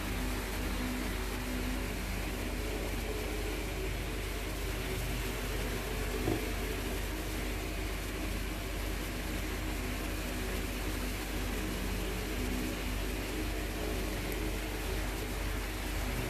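Steady background hum and hiss with a few faint steady tones, and one small tap about six seconds in.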